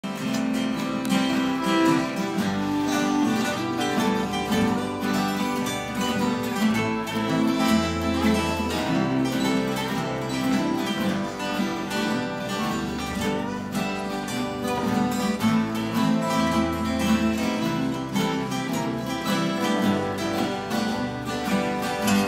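Several acoustic guitars playing together, strumming chords over changing bass notes in an instrumental intro.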